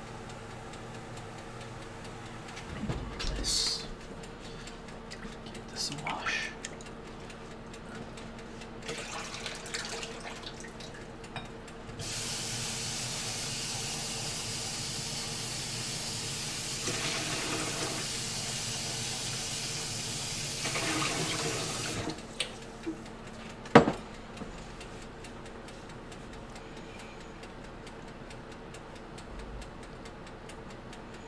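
Kitchen tap running into a stainless steel sink for about ten seconds, starting about twelve seconds in, as something is rinsed under it. A few light clatters of dishes come before it, and a single sharp knock comes shortly after the water stops.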